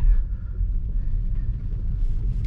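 Low, steady rumble inside the cabin of a Tesla Model S Plaid as the electric car rolls slowly across wet pavement, picking up speed.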